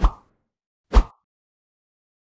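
Two short pop sound effects about a second apart, the second one louder, of the kind laid under animated graphics popping onto the screen.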